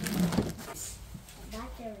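Brief bits of a man's voice, with a short rustle of plastic packaging being handled in between.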